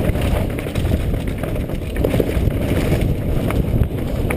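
Mountain bike descending a rough dirt trail at speed: wind rushing over a helmet-mounted camera's microphone, with the tyres rumbling over dirt and rocks and frequent sharp rattles and knocks from the bike over bumps.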